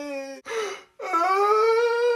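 A man's mock crying in the voice of a small child: a short sob or two, then one long drawn-out wail starting about a second in.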